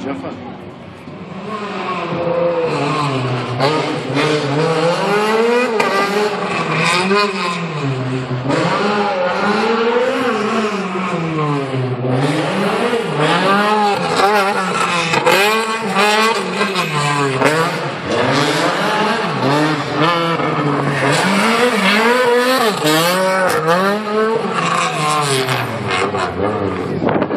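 Competition hatchback's engine revving hard, its pitch climbing and dropping over and over every second or two as the car accelerates and brakes through a tight course of obstacles.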